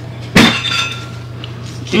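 A single sharp clink of something hard being struck or set down, with a short ringing tail, over a steady low hum.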